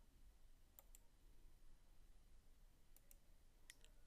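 Near silence broken by a few faint computer mouse clicks, a pair about a second in and another pair about three seconds in.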